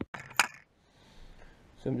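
A couple of small, sharp clicks from a metal paper clip being handled in the fingers, the clearest about half a second in, followed by faint handling noise.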